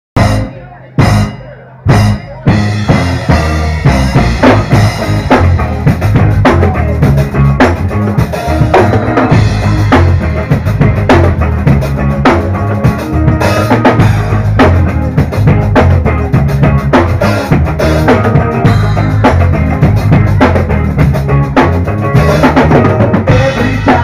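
Live rock band playing an instrumental intro on drum kit, electric guitar and bass guitar with percussion, with a steady beat. It opens with three separate hits about a second apart before the full band comes in.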